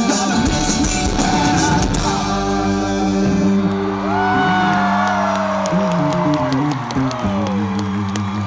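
Live pop-punk band playing the end of a song: full drums and electric guitars until about two seconds in, then held chords ringing out with a voice holding notes that bend downward over them.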